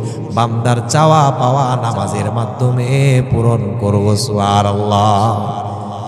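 A man's voice chanting in the melodic style of a Bangla waz sermon, holding long notes with wavering, ornamented turns of pitch.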